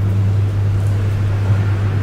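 A steady low hum with a faint hiss over it, unchanging throughout: the constant background noise of the recording, heard in a pause between words.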